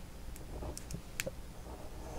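A few faint light clicks of a ballpoint pen touching a paper pattern sheet, over low steady room hum.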